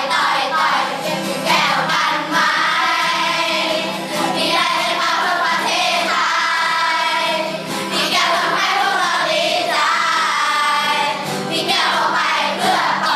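A large children's choir singing together in Thai, with acoustic guitar accompaniment.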